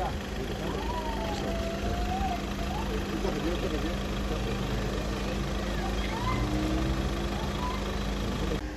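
A vehicle engine idling steadily, with faint voices talking over it.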